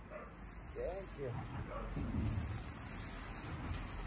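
Quiet outdoor background with a soft rustle of leafy garden plants being pulled up by hand, loudest about two seconds in. A faint short call is heard about a second in.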